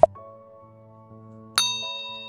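A sharp click sound effect at the start, then about one and a half seconds in a bright bell ding that rings on and slowly fades, the stock sound of a subscribe button and notification bell being pressed.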